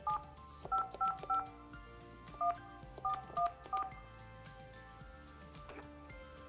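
Keypad tones of a Yealink T29G desk phone as a number is dialed: eight short two-tone dialing beeps in uneven groups over the first four seconds.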